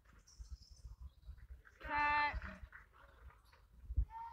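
A single drawn-out shout from a person in a gym, about half a second long, about two seconds in, over faint scattered knocks.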